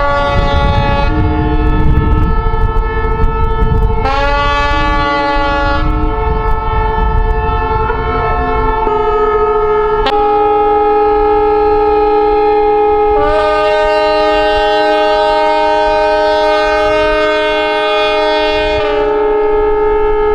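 Many ship horns blowing at once from the vessels moored in the harbour, as a salute. Long, steady blasts overlap in a chord of different pitches, and new horns join about four seconds in and again about thirteen seconds in.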